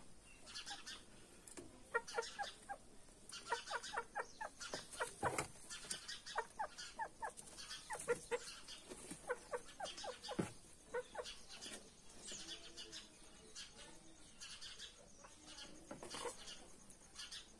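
Chicken clucking in runs of short, quick clucks, densest through the middle and thinning out near the end, with a few sharper taps among them.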